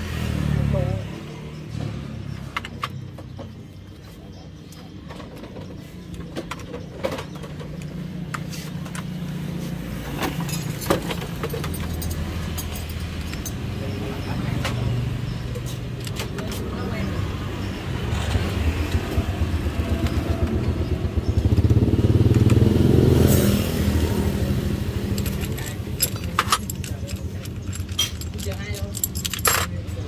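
Metal clicks and clinks of a T-handle socket wrench turning out the spring bolts of a Honda Dream II's wet multi-plate clutch, over a steady low hum that swells about two-thirds of the way through.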